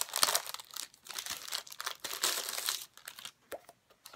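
Packaging being opened by hand, crinkling and rustling for about three seconds, then dying down to a few faint clicks near the end.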